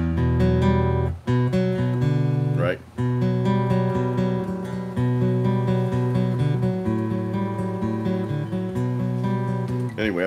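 Acoustic guitar played dry, with no effects, and amplified through an Electro-Voice Evolve 50M column PA: a slow picked riff of ringing single notes over open low strings, with brief breaks about a second and about three seconds in.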